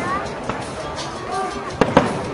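Aerial firework shells bursting: a softer bang about half a second in, then two sharp bangs in quick succession near the end, over the voices of onlookers.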